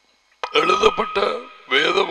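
A man's voice speaking forcefully, starting about half a second in after a near-silent pause.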